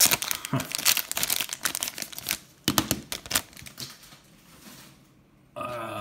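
Clear plastic sleeve crinkling as a trading card in a rigid holder is slid out of it: a dense run of rapid crackles for the first two seconds or so, a few more around three seconds in, then quieter handling.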